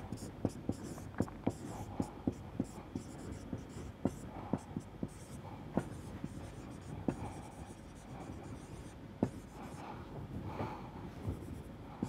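Marker pen writing on a whiteboard: an irregular run of small taps and short strokes, about two or three a second, as letters and symbols are written.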